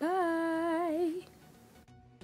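A woman's voice holding one hummed note for about a second, wavering in pitch as it ends. After a short lull, background music with a steady beat starts near the end.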